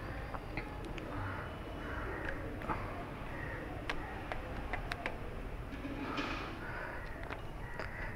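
Faint, irregular clicks and rattles from a worn motorcycle X-ring chain moving over its rear sprocket. The chain has stiff links and the sprocket teeth are losing their shape. Crows caw faintly in the background.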